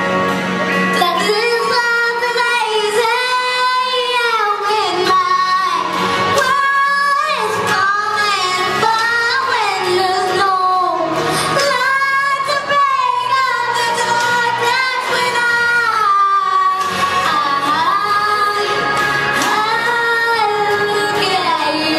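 A six-year-old girl singing a song into a hand-held microphone, her voice amplified, in long held and sliding notes.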